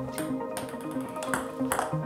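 Background music, with a few sharp clicks of a table tennis ball striking the rubber of the bats and the table during a serve and return, two of them close together near the end.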